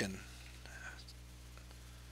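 Quiet room tone with a steady low electrical hum from the recording chain, just after the end of a spoken word.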